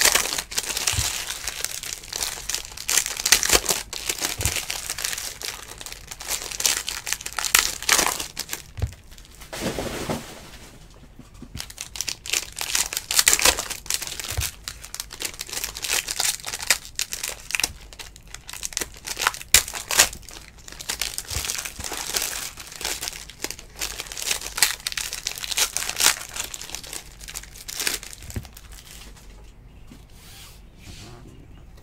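Foil trading-card pack wrappers being torn open and crinkled by hand: irregular crackling and rustling, with an occasional soft knock, thinning out near the end.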